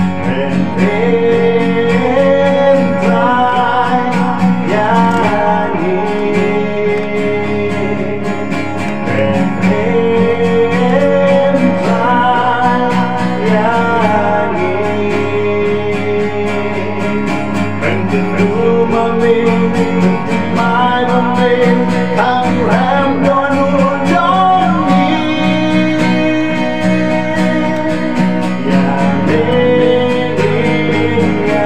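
A man singing a gospel song over a steadily strummed steel-string acoustic guitar.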